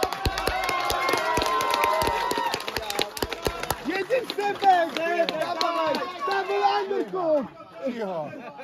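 Spectators and coaches shouting and talking over each other around a grappling match. A quick, irregular run of sharp knocks runs through the first half.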